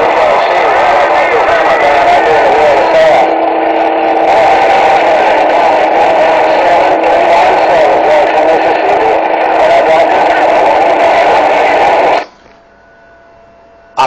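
Loud, distorted voice transmission coming through a CB radio's speaker, narrow and compressed in sound. It cuts off abruptly about twelve seconds in, as the transmitting station unkeys.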